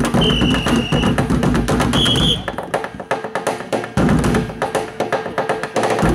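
A group drumming with sticks on blue plastic barrels, playing a fast, driving rhythm of dense strikes. Two short high-pitched tones sound about a second apart near the start.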